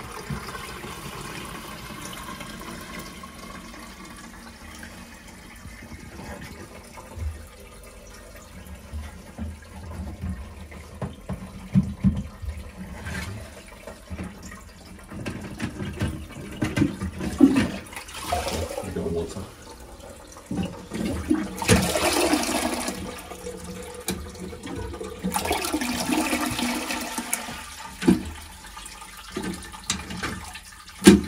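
Concealed toilet cistern filling through its inlet valve, water hissing with two louder spluttering spurts about two-thirds of the way through as air purges from the long supply pipe. Knocks from hands working inside the cistern through its access opening.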